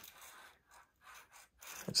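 Faint rubbing and handling noise from a hand holding a tape measure blade and a handheld phone, a few soft scrapes in the first half.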